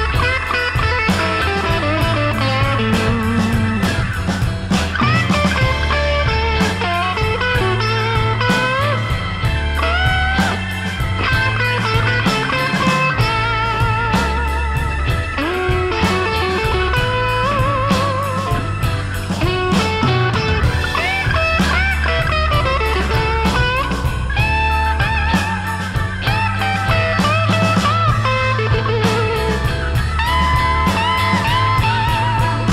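Electric blues band in an instrumental break, with no singing: a lead electric guitar plays bent notes and notes with a wide vibrato over a steady bass line and drums.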